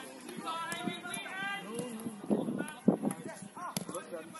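Voices calling out during a football match, with a few sharp knocks, the loudest about three seconds in.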